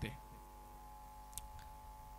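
A pause in a man's speech into a microphone: low room tone with a steady faint hum, and two small clicks about a second and a half in.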